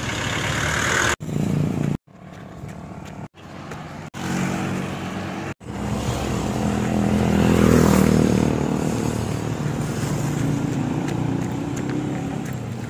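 Road traffic: a motor vehicle's engine running nearby, swelling to its loudest about eight seconds in as it passes and then easing off. The sound breaks off abruptly several times in the first six seconds.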